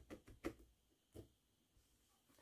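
Faint, quick clicks of a felting needle stabbing wool wrapped on a wooden skewer, a few in the first half second and one more a little after a second; otherwise near silence.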